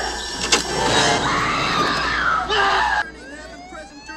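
Film soundtrack: loud shouting of "Sidney, come back! Sidney!", with a sharp bang about half a second in. About three seconds in the sound drops and a rising, siren-like wail begins.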